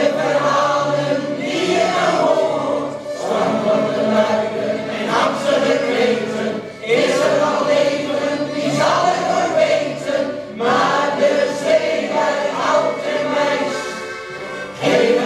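Mixed shanty choir of men and women singing a slow song in long held phrases, accompanied by accordions.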